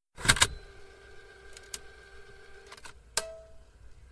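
A series of sharp mechanical clicks and knocks: a loud double click at the start, lighter clicks after it, and another sharp click about three seconds in, with a steady humming tone sounding between them that stops just before that last click.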